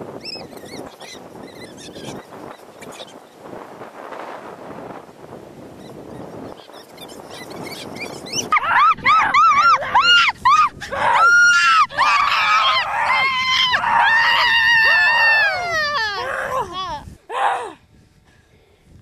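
Wind buffeting the microphone, then from about halfway a long run of loud, high-pitched screaming cries, rising and falling again and again before breaking off near the end.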